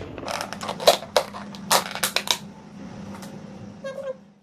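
Thin plastic lid being pried off a clear takeaway tub: a quick run of sharp crackles and snaps over the first two and a half seconds, then quieter handling.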